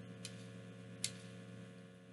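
Metal spoon clinking against a bowl twice while scooping stew, the second click sharper, about a second in, over a faint steady low hum.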